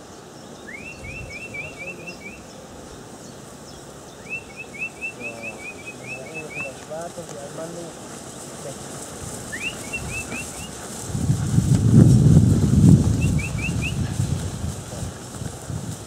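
A small songbird singing short, quick trilled phrases, four times with pauses between them. About eleven seconds in, a louder low sound swells for two seconds and fades.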